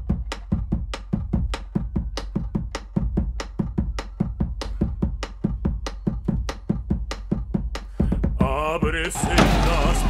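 A fast, even percussion beat of sharp drum hits, played as music. The beat stops shortly before the end, and a singing voice with a wide vibrato comes in.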